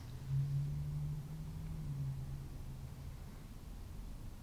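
Quiet room tone with a low steady hum that fades out about two and a half seconds in.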